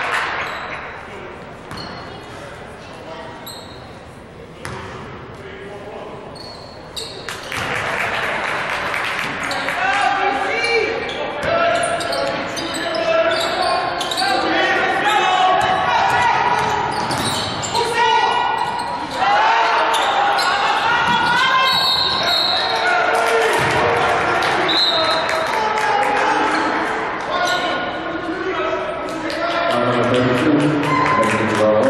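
Basketball bouncing on a hardwood gym floor and sneakers squeaking, with players and spectators shouting in the hall. The voices grow louder about seven seconds in.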